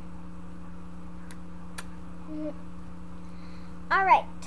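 Steady low electrical hum with a faint buzz under it, broken by two faint clicks in the middle, ending in a short falling vocal sound from a child.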